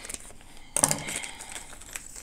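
Scissors cutting open a small plastic hardware bag, with one sharp snip just under a second in. Small clicks follow as the bag of screws is handled.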